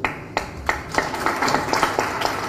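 A series of short, sharp clicks, roughly three a second, over low room noise.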